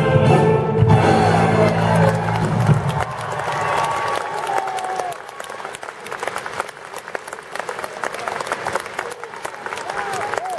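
Male military choir and wind band holding a final chord that ends about three seconds in, followed by steady audience applause.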